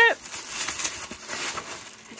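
Gift wrapping paper rustling and tearing as a present is unwrapped by hand.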